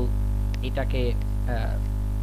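Steady electrical mains hum in the recording, with a few quick spoken syllables over it.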